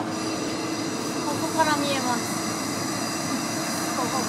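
Ōigawa Railway ED90 Abt rack electric locomotive moving slowly past at close range, with a steady high whine over the running noise of its wheels on the rail.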